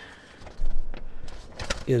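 Handling noise as a handheld camera and its microphone are moved: a low rumble with a couple of sharp clicks.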